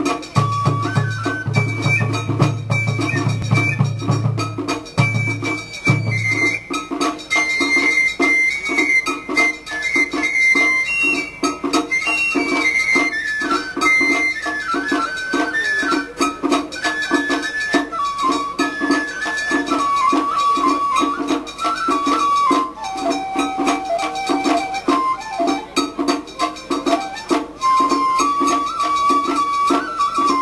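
Traditional Japanese festival music: a high flute melody over a steady drum beat, accompanying a masked fan dance. A low hum runs under it for the first six seconds.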